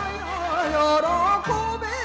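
Japanese min'yō folk song from Hokkaido played from a vinyl record: a wavering, ornamented sung melody over traditional instrumental accompaniment with a regular low beat.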